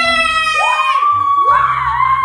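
Two young boys cheering in triumph, one long high shout rising about half a second in and held for over a second, over background music.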